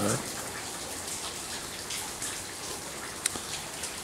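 Steady light drizzle falling, an even patter of rain with scattered individual drops and one sharper tick a little over three seconds in.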